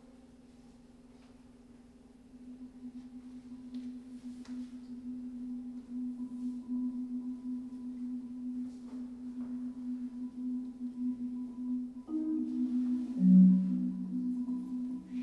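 Marimba played in a soft roll on a single low note. It starts faint and grows steadily louder, and a few more notes, higher and lower, come in near the end.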